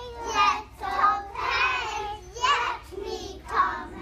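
Young children singing in short phrases with held notes.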